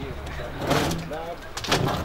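Voices calling out during a football match, with two short hissing bursts of noise, one near the start and one near the end.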